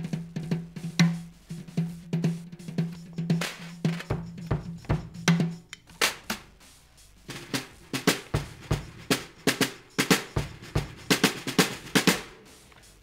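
Acoustic drum kit fitted with Remo Silentstroke mesh heads and perforated low-volume cymbals, played as a fast groove of many quick strokes, with the snare wires left on. A low drum tone rings under the strokes through the first half.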